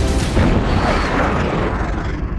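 Fighter jet roar as a trailer sound effect: a loud rushing swell starts about half a second in and loses its high end as it fades, over dramatic music.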